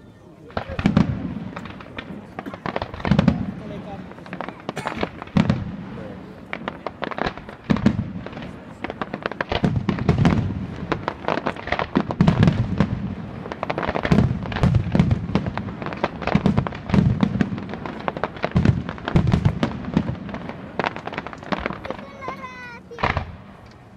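Aerial fireworks display: a dense, nearly continuous run of bangs and crackles as shells and comets launch and burst, with deeper booms every second or two.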